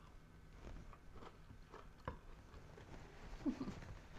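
Faint chewing of a bite of ice cream sandwich: soft, scattered mouth smacks and clicks, with a brief low 'mm' hum near the end.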